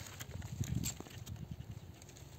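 A hand brushing the stiff fronds of a young date palm: faint, irregular light clicks and rustles over a low rumble.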